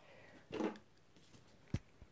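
A short murmur of voice about half a second in, then one sharp click near the end, over quiet room tone.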